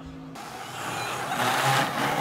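A round plastic sled sliding and scraping down a track of flat hard panels: a rushing scrape that grows louder as it goes.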